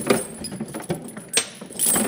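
Steel truck tire chains rattling and clinking as a tangled set is pulled out of a pile in a plastic tote, with several sharp link-on-link clinks, the loudest about one and a half seconds in.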